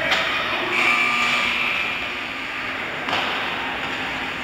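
Ice hockey play in a rink: a steady wash of skates on the ice and general arena noise, with sharp stick or puck knocks at the start and about three seconds in. A faint, brief high held tone sounds for about a second, starting roughly a second in.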